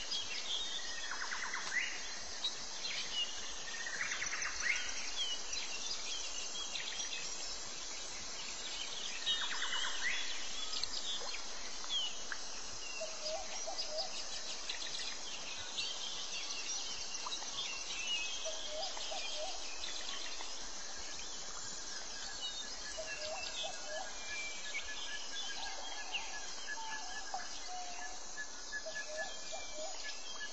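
Outdoor nature ambience of many birds chirping and calling over a constant high insect drone. Several falling calls come early on, and in the second half a short group of lower notes recurs every few seconds.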